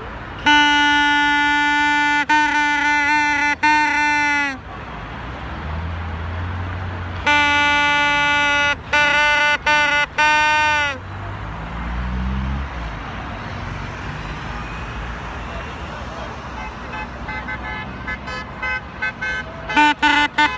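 A loud single-note horn sounding in blasts: a long one broken into three parts near the start, a second run of blasts from about seven to eleven seconds in, each dipping in pitch as it ends, then a string of quick rhythmic toots near the end. Street traffic and crowd noise fill the gaps.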